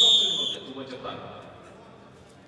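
Referee's whistle, one high blast of about half a second that trails off, signalling the start of a ssireum bout.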